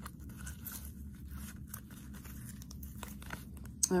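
A deck of tarot cards being handled and shuffled by hand: a run of irregular soft clicks and rustles of the cards.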